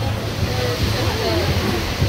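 Steady rush of ocean surf breaking, mixed with wind noise, with faint voices in the background.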